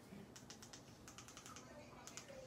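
An irregular run of faint, light clicks, like fingers tapping keys, over near-silent room tone.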